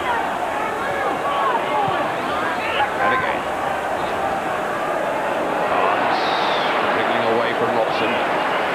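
Large football stadium crowd: a steady din of thousands of voices, with single shouts standing out from it.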